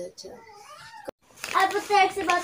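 A high-pitched voice, broken by a sudden drop-out about a second in, then carrying on loudly in the second half.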